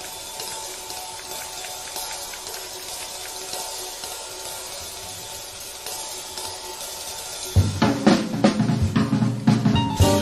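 Jazz drum kit playing live, at first quiet, with light cymbal work and faint held notes behind it. About three-quarters of the way through, loud snare and bass-drum hits break in and keep coming.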